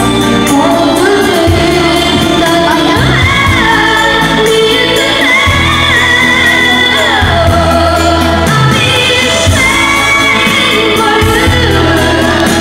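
A boy singing a slow pop ballad through a handheld microphone over a karaoke backing track with a steady bass line, his held notes sliding between pitches.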